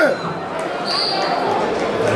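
Echoing arena crowd noise with voices. A shout ends right at the start, and about a second in comes a short, high, steady referee's whistle blast that sets the wrestlers going.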